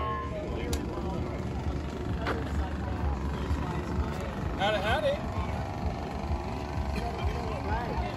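Outdoor ambience dominated by a fluctuating low rumble of wind on the microphone, with people's voices in the background; one voice stands out briefly about halfway through.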